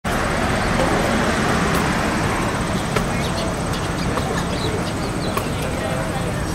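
Steady city background of traffic noise and distant voices, with small birds giving short, faint chirps from about halfway through.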